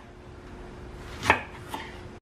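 Kitchen knife cutting through green eggplant and striking a wooden chopping board: one firm chop a little past halfway, then a lighter knock shortly after.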